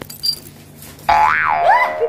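Comic sound effect: a sudden twangy 'boing' tone that swoops up and back down in pitch about a second in, then swoops up again near the end.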